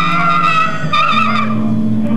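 Free-improvised band music from saxophone, electric guitar, drums and keyboards: a high, wavering held note sings over low sustained notes. The high note fades out a little past halfway while a new low held note comes in.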